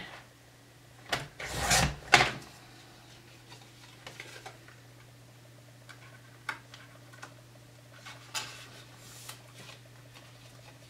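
Paper crafting on a desk: a scraping slide about a second in, then faint rustling and light taps as a folded paper strip is handled, over a low steady hum.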